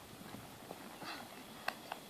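Palomino horse's hooves cantering on grass turf over a small jump, soft muffled hoof beats, with a couple of sharp clicks near the end.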